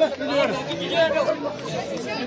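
A crowd of many voices, schoolboys and men, talking and calling out at once.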